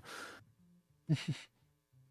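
A person's breathy exhale of laughter, then a second short breathy chuckle about a second in.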